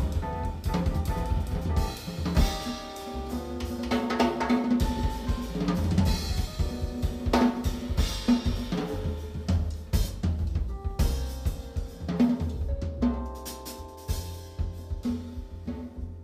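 Live jazz trio playing, the drum kit to the fore with snare, bass drum and cymbal hits over upright double bass and keyboard. The playing thins out and gets quieter over the last few seconds.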